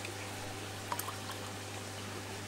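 Liquid coral dip poured faintly from a plastic bottle into a bucket of water, with a couple of light clicks about a second in. A steady low hum runs underneath.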